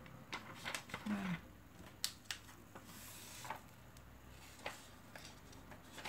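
Faint handling sounds of a plastic laminating pouch and paper: scattered light clicks and a soft crinkle, a few separate ticks over several seconds.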